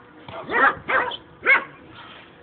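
A dog barking: a run of short, high-pitched barks, about four in a second and a half.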